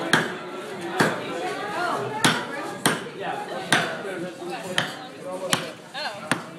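A mallet striking the steel Coco Jack punch, driving it into the top of a young coconut to cut out a lid: about seven sharp knocks, roughly one a second.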